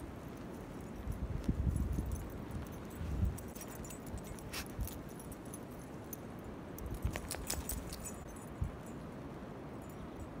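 Wind gusting on the phone microphone, with small metallic jingles of dog collar tags now and then as dogs bound through deep snow, most around the middle and toward the end.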